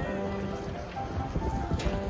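Soft background music with a few held notes, over a steady hiss.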